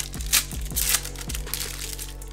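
Foil trading-card pack being torn open and crinkled by hand, in several crackly bursts, over background music with a steady bass beat.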